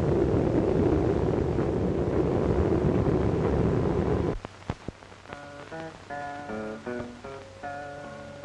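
Loud, steady rushing storm noise of thunder and rain, which cuts off suddenly about four seconds in. After that an acoustic guitar is plucked, picking out a melody of single notes as the introduction to a cowboy song.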